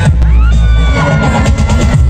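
Loud amplified pop music from a concert sound system, with heavy bass, a rising sweep about a quarter-second in, then long held tones.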